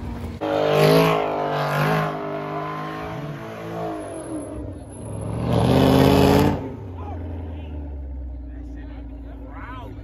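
Cadillac CTS sedan's engine revving hard in bursts as the car spins donuts, the loudest rev about six seconds in, then running lower and steadier with a growling exhaust.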